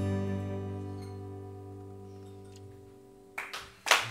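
The final chord of a bowed cello and an acoustic guitar, held and fading slowly away. Near the end the audience starts to clap.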